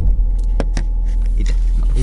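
Handling noise from a camera being moved and set in place: a few sharp knocks and clicks about half a second in, over a steady low rumble.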